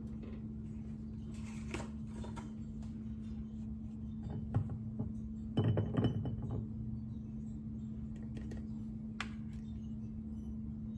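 Glass clinks and light knocks as a spice bottle is handled and tipped against the rim of a glass jar to pour ground spice in: a few scattered clinks, with a cluster of louder ones a little past halfway. A steady low hum runs underneath.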